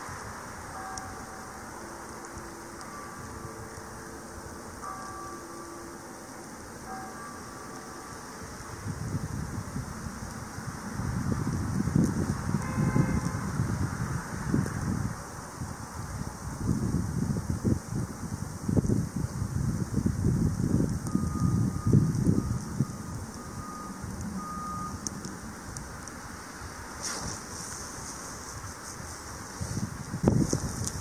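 Outdoor storm ambience: irregular low gusts, typical of wind buffeting the microphone, swell from about nine seconds in. Faint repeated beeps, like a distant vehicle's reversing alarm, sound near the start and again near the end.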